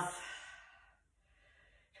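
A woman's slow breath out through the mouth, a sigh-like exhale that fades away over about a second, as slow, controlled cool-down breathing.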